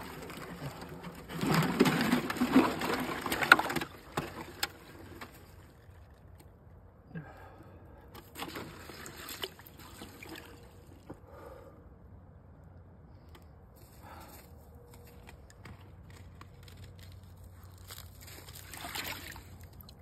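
Icy water sloshing and splashing in an enamelled clawfoot bathtub as a man lowers himself in, loudest for a couple of seconds near the start. After that come quieter bouts of water movement as he sits and shifts in the tub.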